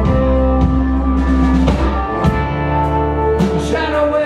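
A rock band playing live: electric guitars and a pedal steel guitar over bass and drums, with drum hits cutting through the held guitar notes.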